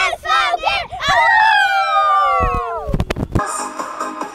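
A huddle of young boys shouting their team chant in unison: quick rhythmic syllables, then one long drawn-out shout that falls in pitch. A few thumps come as the shout ends, and music starts in the last half second.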